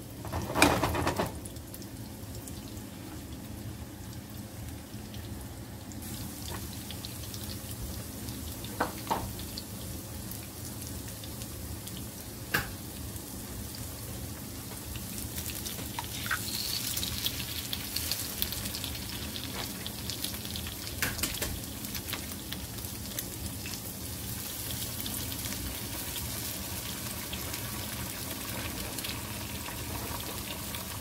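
Sweet potato fries frying in hot avocado oil in a skillet: a loud sizzle burst about a second in as they go into the oil, then a steady sizzle. There are a few sharp clicks later. From about halfway through the sizzle grows louder and brighter as eggs go into a second pan with bacon.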